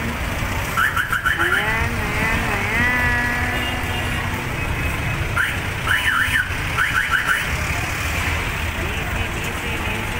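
Electronic vehicle alarm sounding over street traffic rumble, in groups of quick rising chirps about a second in and again from about five to seven seconds in, with longer wavering tones between.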